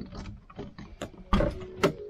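Truck camper entry door lock and latch being worked by hand: a run of mechanical clicks and rattles, loudest in two sharp clacks about half a second apart in the second half.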